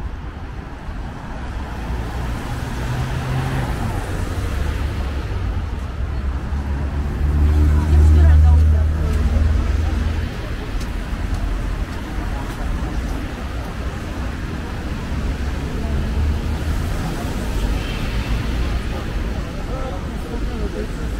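Road traffic on a city street: a steady wash of passing cars, with a heavy vehicle's low engine hum swelling as it goes by, loudest about eight seconds in.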